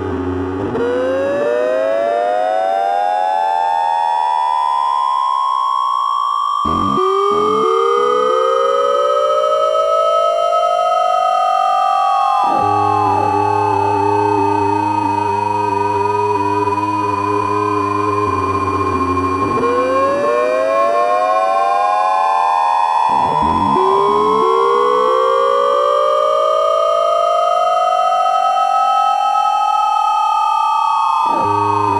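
Experimental electronic oscillator music: a bundle of tones glides slowly upward over about six seconds and levels off, repeating about every six seconds. Under it runs a low steady drone that cuts in and out.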